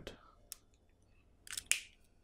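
Small handling noises of a felt-tip marker and its cap: a sharp click about half a second in, then a short scraping rustle a second later.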